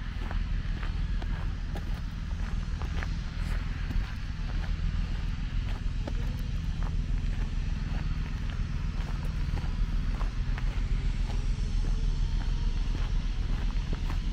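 Footsteps crunching on a gravel path at a walking pace, over a steady low background rumble.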